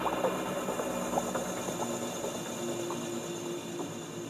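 Outro of a progressive psytrance track: sustained synth tones with scattered short blips and no beat, slowly getting quieter.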